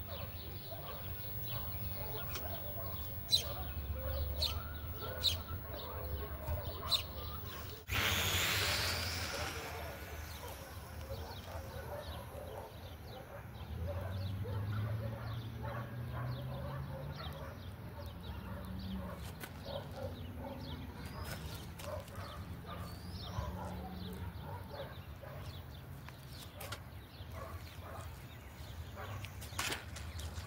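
Electric motor and propeller of a Volantex RC F4U Corsair model plane taking off: a sudden loud whoosh about eight seconds in that fades over about two seconds. Around it lies faint outdoor background with scattered small clicks.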